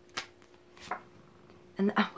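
A deck of tarot cards being shuffled by hand, with two sharp card taps, one about a quarter second in and another near one second. A woman starts speaking at the very end.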